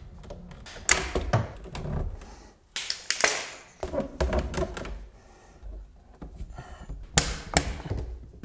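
Rigid PVC pipe and fittings knocking and scraping as the pipe is pushed into place and seated in its hanger: a string of irregular sharp plastic knocks, two of the loudest close together near the end.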